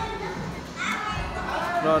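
Children's voices, talking and calling out while they play, over the background hubbub of a large indoor room.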